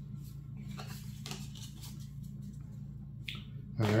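Faint scattered clicks and ticks of trading cards being handled, about one every half second, over a steady low hum.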